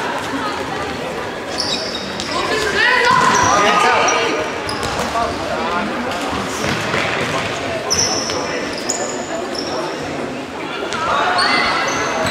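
Football being kicked and bouncing on a sports-hall floor during indoor play, with players' shoes squeaking in short high chirps and players shouting, all echoing in a large hall.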